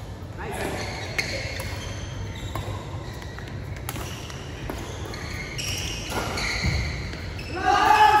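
Badminton rally in a large hall: several sharp racket hits on the shuttlecock, spread a second or so apart, over players' voices, with a loud call near the end.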